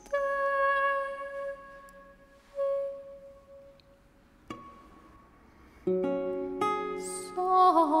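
Slow plucked chords and single notes on a lute, each left to ring and fade, with a quiet stretch in the middle. A woman's voice begins singing just before the end.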